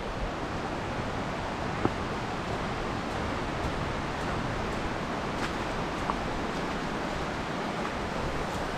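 A stream's running water: a steady, even wash of noise, with a couple of faint clicks about two and five seconds in.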